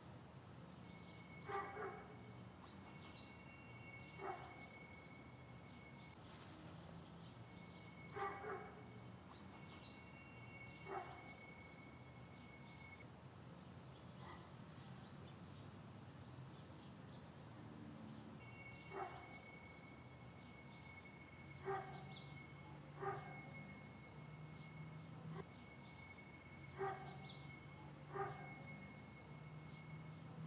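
A dog barking faintly in the distance, in single barks and pairs spread irregularly through, over quiet outdoor background with a faint steady high tone.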